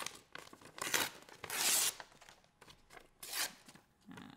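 Magazine paper being torn by hand in three short rips, the longest and loudest about a second and a half in.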